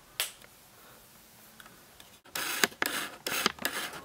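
A few isolated soft clicks, then, after an abrupt cut about two seconds in, dense rustling and clicking right at the microphone, like hands or clothing brushing against the camera.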